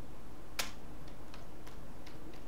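Computer keyboard being typed on: one sharp, loud keystroke about half a second in, then a few lighter key clicks, over a steady low hum.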